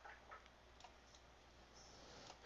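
Near silence with low room hum and a few faint, short ticks, about three of them in the first second.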